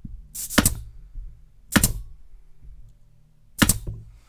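Upholstery staple gun firing staples through fabric into a wall panel: four sharp shots, two in quick succession about half a second in, one just under two seconds in and one near the end.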